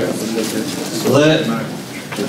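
A man speaking Albanian into a microphone, with a brief quieter pause before a drawn-out word about a second in.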